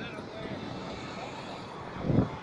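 Steady, even background noise of traffic and wind, with faint indistinct voices in it.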